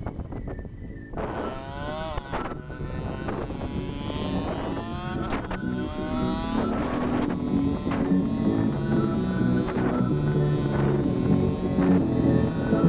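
KTM Duke motorcycle engine accelerating through the gears: its pitch climbs, breaks off and climbs again several times as it shifts up, over steady wind noise on the helmet-camera microphone. Background music comes in during the second half.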